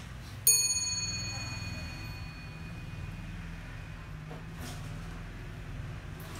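Antique wall clock striking its bell once after its hands are turned by hand: a single clear stroke about half a second in, ringing on and fading over a couple of seconds.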